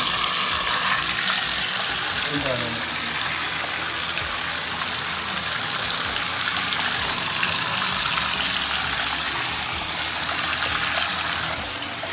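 Bathtub faucet running, cold water gushing into the tub in a steady rush that eases slightly near the end.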